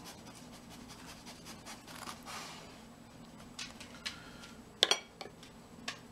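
A metal spoon clinking and scraping against a ceramic bowl and plate as mustard sauce is spooned out, with a few light taps and one sharp clink just before five seconds in. A faint steady hum underneath.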